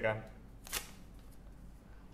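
A spoken word trails off, then one short dry rustle about three-quarters of a second in, over faint room tone.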